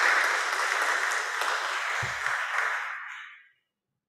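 A congregation applauding, a dense clatter of many hands clapping that fades away about three and a half seconds in. A short low thump sounds about two seconds in.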